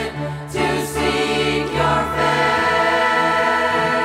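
A mixed group of girls', boys' and men's voices singing a worship song together into microphones, with instrumental accompaniment that holds long low notes underneath.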